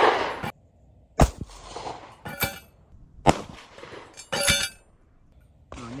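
Two shots from a Canik TP9 9x21 mm pistol, sharp cracks about one and three seconds in. Each is followed about a second later by a shorter ringing clink.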